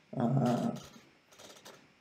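A man's drawn-out hesitant "ehh", lasting under a second, then faint small sounds in a pause before he goes on speaking.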